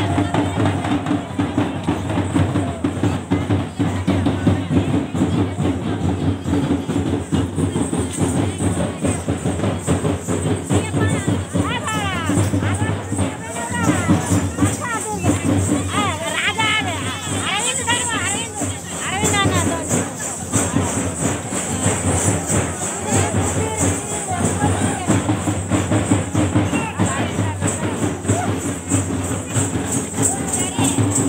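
Drums beaten in a steady dance rhythm, with a crowd's voices shouting over the drumming, busiest in the middle.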